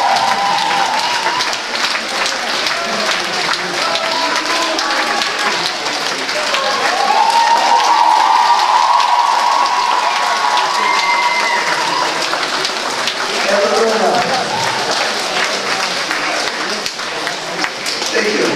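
Hall full of people applauding steadily, with voices calling out over the clapping.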